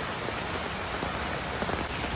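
Steady rain falling on the surrounding leaves, an even patter with faint scattered drops.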